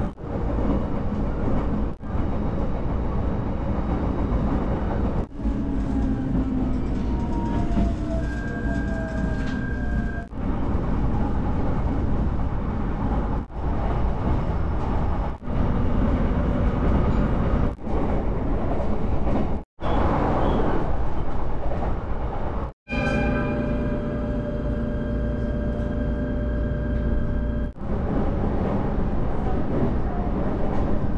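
Electric train running at speed, heard from inside the carriage: a steady rumble of wheels on the rails with a whine that comes and goes. The sound is broken by several abrupt cuts.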